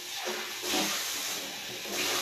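A steady hiss lasting nearly two seconds, strongest in the upper range, with no clear voice in it.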